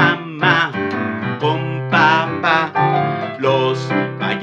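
A man singing a Spanish children's song over a piano-style keyboard accompaniment.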